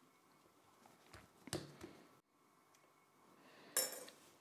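Faint handling noises of hands working cookie dough on a wooden worktop: a few soft knocks and taps, then a short rustle near the end.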